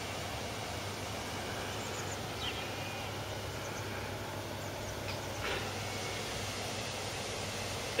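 Steady outdoor background noise by the castle moat, with two faint short calls, the first about two and a half seconds in and the second about five and a half seconds in.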